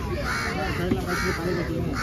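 A crow cawing over and over, about two harsh caws a second, over low background voices.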